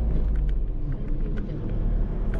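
Steady low rumble of a cab-over camping car driving slowly: engine and road noise, with a brief dip about a second in.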